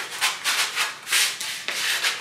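A piece of old cinnamon wood being sanded by hand with sandpaper: short back-and-forth strokes, about two to three a second.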